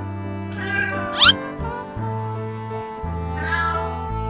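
A cat meowing twice over steady background music: once about half a second in, followed at once by a quick, sharp upward sweep that is the loudest moment, and again shortly before the end.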